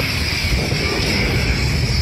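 Test Track ride vehicle running along its track, a steady low rumble with constant ride noise over it.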